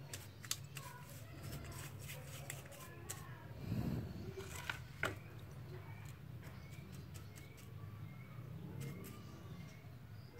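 Faint scratching and light clicking of a paintbrush scrubbing the metal body of a Suzuki Thunder motorcycle carburetor while it is cleaned in fuel.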